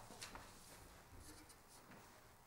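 Near silence: room tone with a few faint rustles and light clicks.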